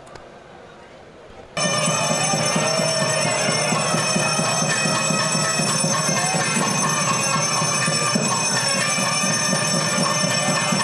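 Temple bells ringing continuously during the lamp offering (aarti), over a dense din. It starts suddenly about a second and a half in.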